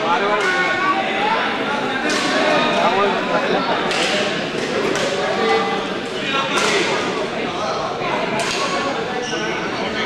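Badminton rackets striking a shuttlecock, about five sharp hits roughly two seconds apart, echoing in a large hall over continuous crowd chatter.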